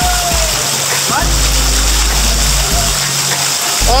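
Water showering down from an overhead splash feature into shallow pool water, a steady hiss of falling drops. A short bit of voice is heard at the very start.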